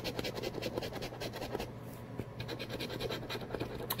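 A metal coin scratching the coating off a scratch-off lottery ticket in rapid, repeated short strokes, uncovering the winning numbers.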